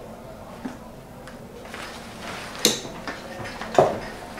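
Handling noise as a backpack is closed and set down: faint rustling, then two sharp knocks about a second apart in the second half, the second the loudest.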